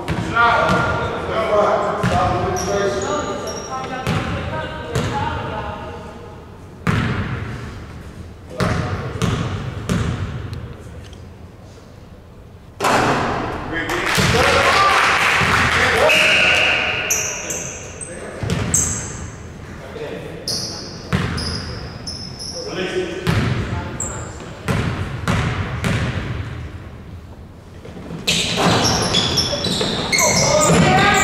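Basketball bouncing on a hardwood gym floor, with sneakers squeaking and players and spectators calling out, echoing in a large gym. A burst of shouting comes about thirteen seconds in, followed by a short whistle blast.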